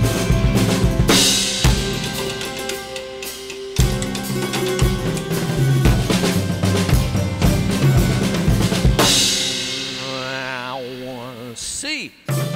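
Acoustic drum kit played fast, with bass drum, snare, rimshots and tom strokes over sustained pitched notes underneath. About nine seconds in the playing stops on a cymbal crash that rings and fades, with a wavering tone under it near the end.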